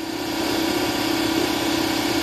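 Air compressor running with a steady hum, building up air pressure in a test line toward a safety valve's pop-off point of about 120 psi.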